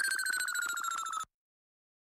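A high electronic tone from the song's outro, pulsing rapidly while it slowly glides down in pitch and fades, then cut off abruptly just over a second in.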